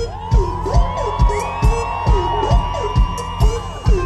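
A live dancehall band playing, with a steady kick drum at about two beats a second, and the crowd whooping and cheering over the music.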